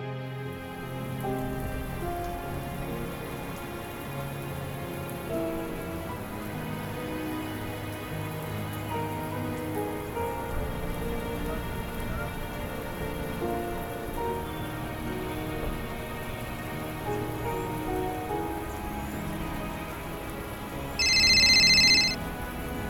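Steady heavy rain falling, with soft sustained music notes beneath it. About a second before the end, a loud high electronic ringtone cuts in, a phone ringing.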